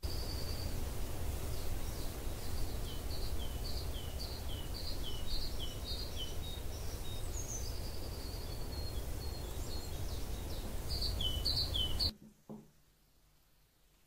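Outdoor ambience: a steady low rumble and hiss, with a small bird singing a run of short, high chirps, about two a second, then a brief descending trill and a few more chirps. It all cuts off suddenly about twelve seconds in.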